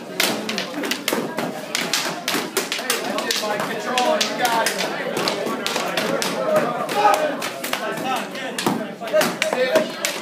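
Arnis sticks striking each other and the fighters' padded armour and helmets in quick, irregular flurries of knocks during a full-contact sparring bout, with onlookers' voices in the room.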